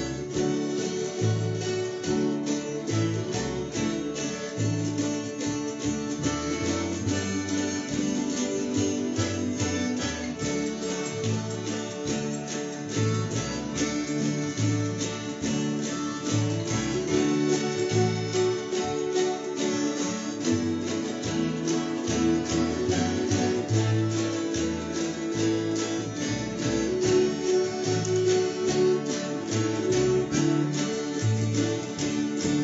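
Mountain dulcimer and acoustic guitar playing a tune together in a steady strummed rhythm, with repeating bass notes under a sustained melody.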